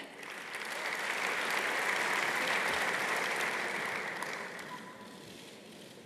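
Audience applauding, building over the first second, holding, then dying away about five seconds in.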